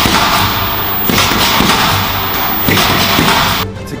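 Boxing-gloved punches thudding into a heavy punching bag, under loud background music.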